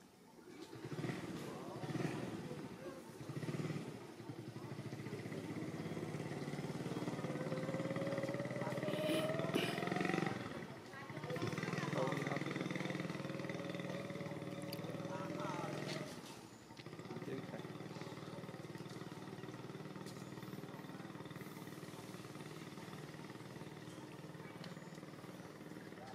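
People talking over a steadily running motor engine, whose pitch rises twice in slow revs.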